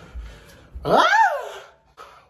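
A dog gives a single call about a second in: one quick rise in pitch that falls away again, lasting under a second, with faint low rustling before it.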